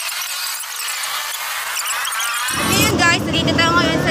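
Thin, high-pitched voices with the low end cut away, then a woman's voice at full range from about two and a half seconds in.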